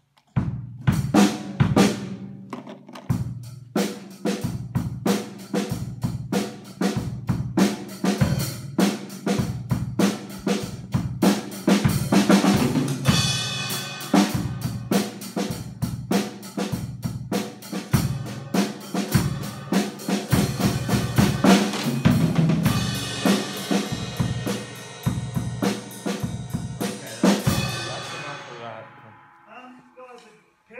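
Acoustic drum kit played hard: a continuous run of snare and bass-drum hits with cymbals. The cymbal wash builds through the middle, and the playing stops near the end, leaving the cymbals ringing out.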